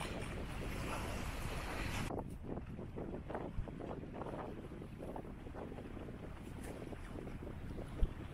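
Wind buffeting the microphone beside choppy open water: a steady low rumble that surges in gusts. About two seconds in, the higher hiss cuts off abruptly, leaving the gusty rumble.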